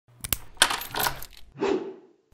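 Metallic padlock-unlocking sound effect: two sharp clicks, a jingling metallic rattle, then a duller clunk near the end as the lock opens.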